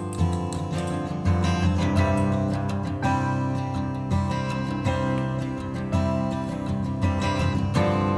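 Background music: strummed acoustic guitar playing steady chords.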